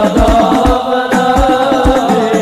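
Sholawat, an Islamic devotional song, sung in Arabic: a voice chants a wavering melody over a repeated drum beat.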